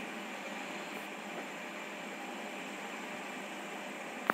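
Steady, even hiss of recording background noise, with no other sound.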